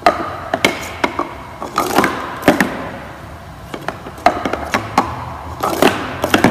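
Plastic sport-stacking cups clacking against each other and the wooden floor as they are up-stacked into a pyramid and down-stacked again, in several quick flurries of sharp clacks with short pauses between.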